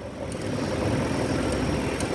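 Steady background rumble like a running engine, a continuous noise with a low hum, rising slightly in level shortly after the start.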